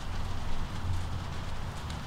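Outdoor background noise: a steady low rumble under a faint hiss, with no distinct events.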